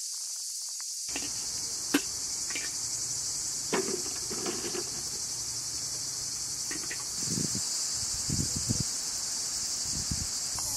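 Steady high-pitched chorus of insects. A sharp click about two seconds in is the loudest sound, and a few soft knocks and rustles come later.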